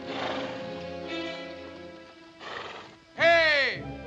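A horse whinnies loudly about three seconds in, one call that rises sharply and then falls away, over background music.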